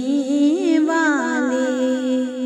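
Unaccompanied naat singing: a voice draws out the end of a line in a long, ornamented melismatic note over a steady hummed drone, settling into a held tone about halfway through.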